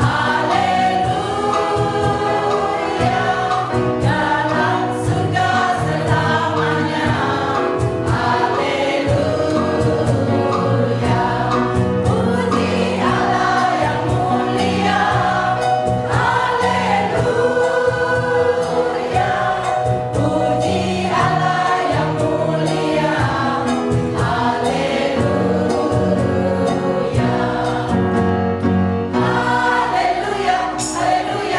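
Mixed choir of women and men singing a gospel song together, continuous through the whole stretch.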